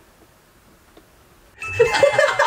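Faint room tone, then about one and a half seconds in a sudden, loud doorbell-like chime sound effect starts, with several steady high notes.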